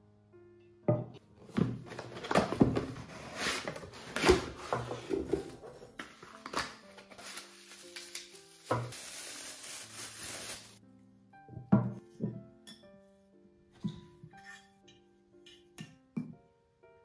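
Handling noises as a small saucepan comes out of its cardboard box: rustling and crinkling of packaging and plastic wrap, with knocks and clinks of the pot and its glass lid. There is a steady hiss of plastic film being pulled for about two seconds past the middle, and a couple of knocks shortly after. Soft piano music plays underneath throughout.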